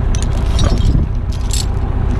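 Tractor diesel engine running steadily at a low rumble, with a few short clinks and scrapes of a steel choker chain being handled around a log.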